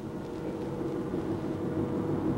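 A steady, even mechanical drone made of several held tones over a low hum.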